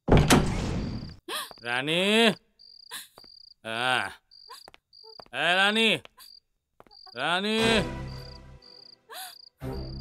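A loud bang at the very start, then a man's drawn-out, rising-and-falling taunting calls breaking into laughter, repeated four times, over steady evenly spaced cricket chirps.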